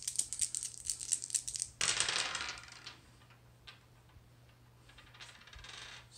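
Three dice shaken with a quick rattle for about two seconds, then thrown down on the table, clattering as they tumble, with a few last clicks as they settle.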